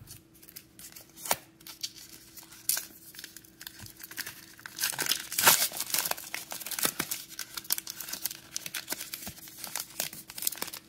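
A foil trading-card pack being torn open by hand and crinkled, a run of sharp crackles that grows loudest about five seconds in.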